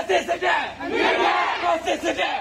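A crowd of protesters shouting a slogan together in Burmese, many voices loud and overlapping.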